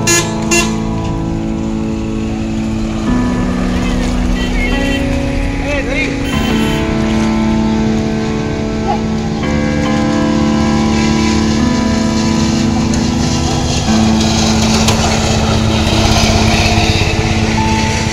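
Background music: a melody of long held notes that shift in pitch every second or two.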